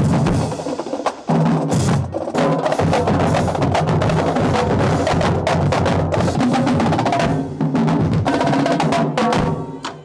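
Marching band drumline playing a loud, fast street cadence: snare drums, tenor drums and bass drums with cymbals, in dense rapid strokes. It stops abruptly near the end.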